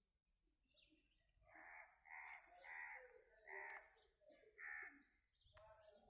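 A bird calling faintly, five short calls in a row over about three seconds, with a short sharp knock near the end.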